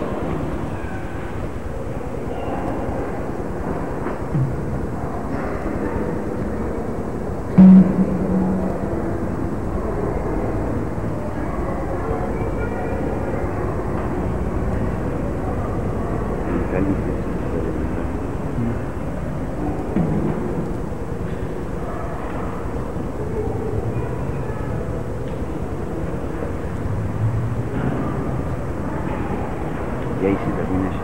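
Steady, muffled room noise in a church with faint, indistinct voices, and one short loud knock or bump about eight seconds in.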